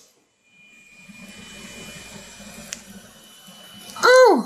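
Faint steady room noise with a low hum and a thin, steady high whine. It starts after a brief dropout at the beginning, and a single sharp click comes about two-thirds of the way through.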